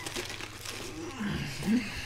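Teeth biting into and crunching a whole raw head of iceberg lettuce, crisp crackling crunches through the first second. A short low vocal grunt with a rising and falling pitch follows about a second and a half in.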